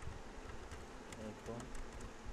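A few faint computer keyboard keystrokes, short clicks, over a steady background noise.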